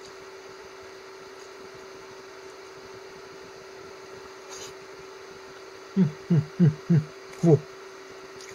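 A man chuckling: five quick, falling "heh" pulses about six seconds in, over a steady low hum that runs through the quiet first part.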